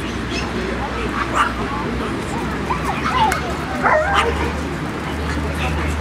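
A dog giving short, high yips and whines in a few clusters, over a background of people talking.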